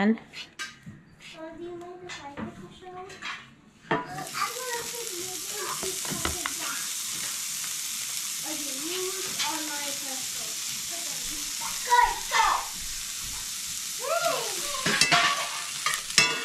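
A knife chopping hot dogs on a cutting board, then, suddenly about four seconds in, hot dog pieces sizzling steadily in a hot cast iron skillet while a metal utensil stirs and scrapes them against the pan.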